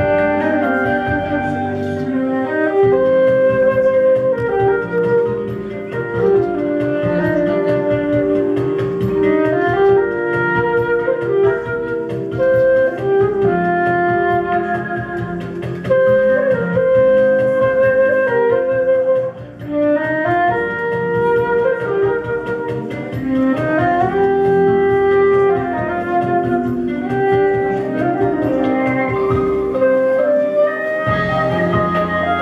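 Concert flute playing a melody into a microphone over a backing accompaniment of sustained keyboard chords and a steady beat. The music drops briefly about two-thirds of the way through, then carries on.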